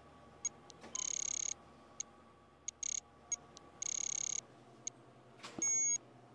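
Electronic beeps and ticks from an Exergen temporal artery thermometer during a forehead scan. Short ticks are spaced through the scan, with longer high beeps about a second in and about four seconds in, and a different, shorter beep near the end.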